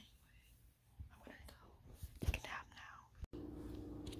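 Soft whispered speech, murmured too quietly for words to be made out. About three seconds in it cuts off abruptly and a steady low hum takes over.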